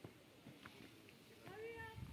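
Near silence, with one faint, brief high-pitched call near the end.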